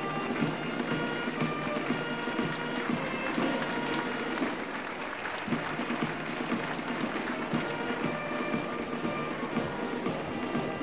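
Pipe band playing: bagpipes sound a melody of held notes over their steady drone, with the band's drums beating along.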